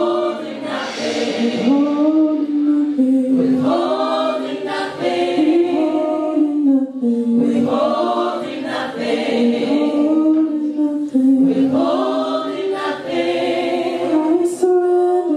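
A gospel praise and worship team of several singers singing together through handheld microphones, in long held notes.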